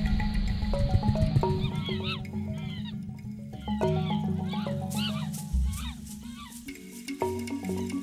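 Background music, with a run of high, rising-and-falling chimpanzee calls over it from about a second and a half in until about five seconds in.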